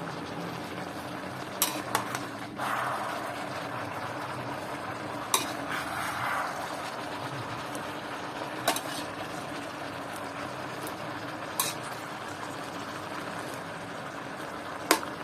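Cabbage and pork belly stir-frying in an aluminium pan: a steady sizzle, with a metal spatula scraping through the leaves and knocking sharply on the pan about five times, and the sizzle swelling briefly twice as the food is turned.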